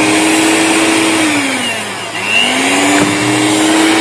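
Electric hand mixer running steadily while its beaters whip egg-based sponge cake batter. About midway the motor's pitch drops and then climbs back up to its earlier speed.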